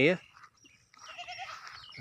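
Goats bleating faintly: a wavering call that begins about a second in and carries on.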